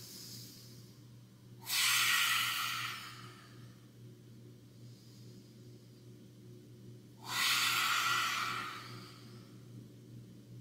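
Two forceful open-mouthed exhalations in yoga lion's breath, pushed out through the mouth. Each is about a second and a half long, starts sharply and trails off, and they come about five seconds apart.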